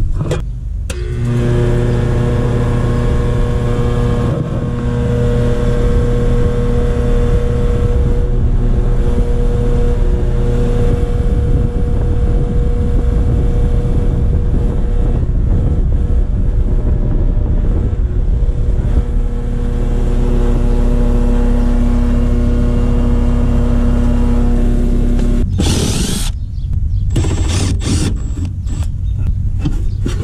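Outdoor air-conditioner condenser switched on: the compressor and condenser fan motor start about a second in and run with a steady electrical hum, then shut off suddenly near the end, followed by a few clicks and rattles of sheet-metal panel handling. In this run the compressor and fan wires sit on the wrong run-capacitor terminals, so the fan is not turning as it should and the unit sounds funny to the technician.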